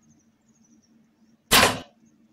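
Compound bow shot: after near quiet, a single sharp snap of the string releasing the arrow about one and a half seconds in, dying away within a fraction of a second.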